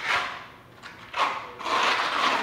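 Flat trowel scraping across wet cement mortar on a concrete slab, spreading and levelling it in three sweeping strokes: one at the start and two close together in the second half.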